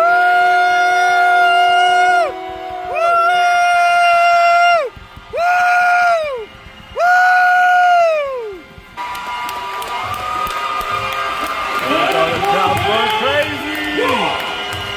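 A horn blown in four long blasts, one to two seconds each, every note sagging in pitch as it cuts off. Then crowd cheering and shouting from about nine seconds in.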